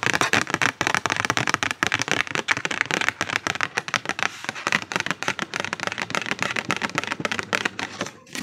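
Pink paper cards being fluttered rapidly by hand: a dense, fast crackling flutter that keeps up throughout.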